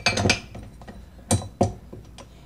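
Metal dough hook clicking and clinking against a stand mixer's head as it is fitted onto the attachment shaft: a cluster of sharp clicks at the start and two more a little past halfway.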